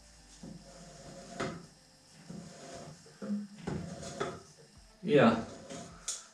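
Scattered metal clicks and knocks from a homemade steel drill stand as its feed lever and carriage are worked by hand. A few words are spoken briefly near the end.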